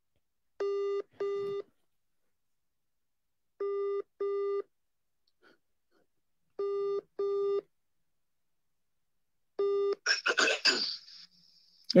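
British-style telephone ringback tone: a steady double ring (two short tones, then a pause) heard four times, once every three seconds. The fourth ring is cut off after its first tone as the call is answered, and a voice and laughter come on near the end.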